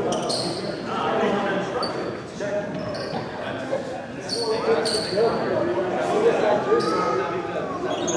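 Basketball bouncing on a hardwood gym floor, a few times at irregular moments, while people talk throughout.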